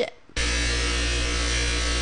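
Electric bench buffer running steadily with an even motor hum and whine, polishing a stainless spoon ring held on a wooden dowel against the buffing wheel. The sound cuts in suddenly about a third of a second in.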